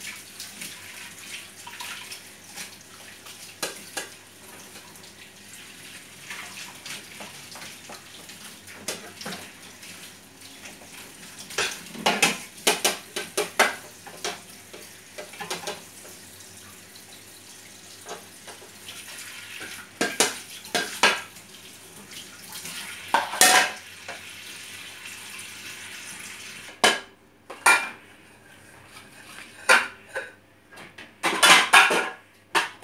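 Hand dishwashing at a kitchen sink: tap water runs steadily into the sink while plates and bowls clink and clatter against each other in several short bursts. The running water stops near the end.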